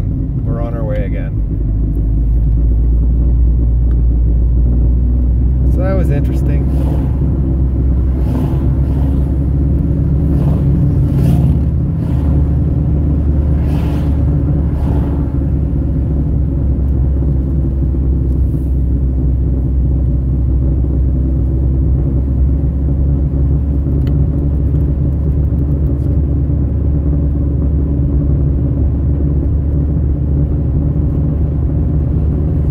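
Steady engine and road rumble heard from inside the cabin of a 2001 Saab 9-5 Aero on the move, its 2.3-litre turbocharged four-cylinder running under way. The rumble grows a little louder about two seconds in.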